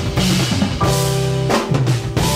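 Live instrumental jazz-rock trio of keyboards, electric bass and drum kit playing, with held keyboard chords over the bass that change every second or so, and sharp drum hits.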